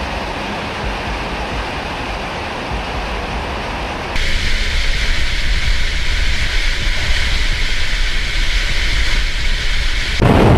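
Aircraft in flight heard from inside an open bomb bay: a steady rush of air over a deep rumble. About four seconds in it steps up, louder and hissier, and stays that way.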